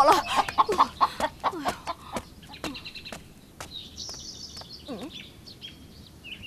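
A hen clucking in quick, short repeated calls that fade away over the first two seconds, followed by faint high chirps.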